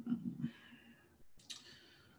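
A few quiet clicks, likely a computer mouse working a charting program, with a short low murmur of a man's voice in the first half second.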